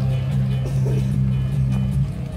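Live rock band music from a large outdoor stage PA, heard from within the crowd: amplified guitars and bass hold low, sustained notes.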